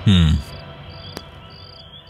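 Crickets chirping in short, evenly spaced high trills, about two a second, as a steady night-time background. Near the start comes a brief, louder low vocal sound from a man, falling in pitch.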